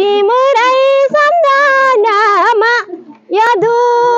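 A woman singing a Nepali song unaccompanied in a high voice, holding long notes with quick ornamental turns, with a short breath break about three seconds in.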